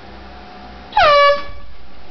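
A handheld compressed-gas air horn gives one short, loud blast about a second in, its pitch sliding down at the start and then holding steady before it cuts off.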